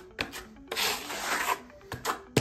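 Metal trowel scraping as it spreads a second coat of filler across a plaster wall: a short stroke, then a longer one lasting about a second.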